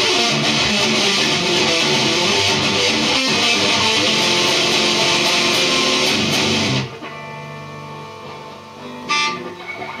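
Seven-string Sterling by Music Man electric guitar played loud and heavily distorted in a fast metal jam. About seven seconds in the playing stops abruptly, and a chord is left ringing out and fading.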